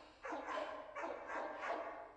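A run of about five short, muffled, voice-like sounds in quick succession, garbled and without words.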